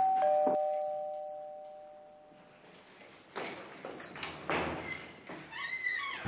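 Two-tone ding-dong doorbell rings once, a higher note and then a lower one, dying away over about two seconds. A few soft knocks and shuffles follow in the second half.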